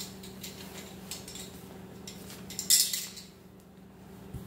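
Small metal clicks and clinks from the hook and buckle of a boat-cover tie-down strap being handled, with the loudest rattle a little before three seconds in. A steady low hum runs underneath.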